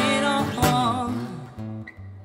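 Acoustic guitar with phosphor bronze strings strummed in a pop song, with a woman's sung note wavering over the first second; then the singing stops and the strumming goes on more softly.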